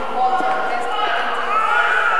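A woman speaking into a hand-held microphone over a hall's sound system. The sound is thin, with the low end missing.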